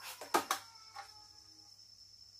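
A few sharp clicks as a phone and a portable Bluetooth speaker are handled: two close together in the first half second, and a fainter one about a second in.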